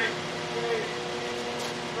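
A steady machine hum made of a few constant tones, running evenly throughout.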